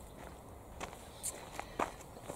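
A few soft footsteps on garden ground, in the second half.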